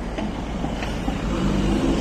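A car driving past close by, its engine and tyre noise building slightly toward the end.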